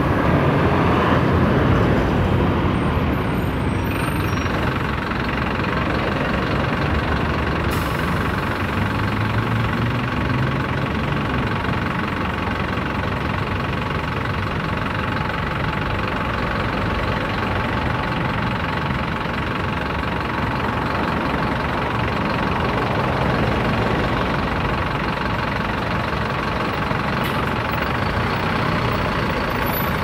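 Traffic noise, then from about four seconds in a Mercedes-Benz city bus's diesel engine running close by with a steady high whine.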